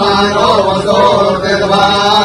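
Male voices chanting Hindu mantras in a steady, sustained melody during temple worship.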